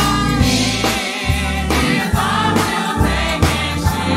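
Gospel praise team of several voices singing together into microphones over a band with sustained bass and a steady drum beat.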